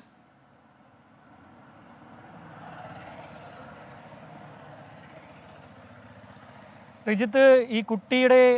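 Faint, steady outdoor background noise with a low hum, coming in about a second after an abrupt cut and holding until a man starts speaking near the end.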